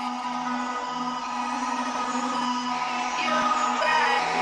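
Intro music of steady held tones, growing a little louder near the end.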